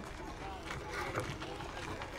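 Faint distant voices over outdoor ambience, with light scattered ticks and no loud event.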